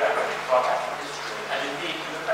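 Speech only: a panelist talking over a microphone in a hall, with no other distinct sound.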